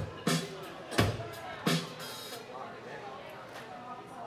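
Live band music: sharp drum hits about every 0.7 seconds that stop about two seconds in, followed by a brief cymbal wash, while guitar and voices carry on more quietly.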